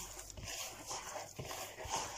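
A hand kneading coarse cornmeal dough in a ceramic bowl: soft, quiet squishing and pressing, with a few faint knocks.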